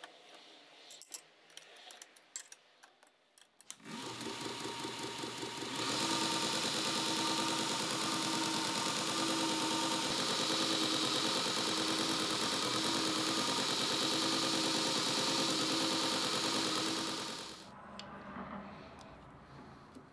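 Faint handling clicks on a Grizzly 2x42 belt grinder. About four seconds in, the grinder's motor is switched on and ramps up to speed over about two seconds, the abrasive belt running with a steady hiss and hum. Near the end it is switched off and winds down.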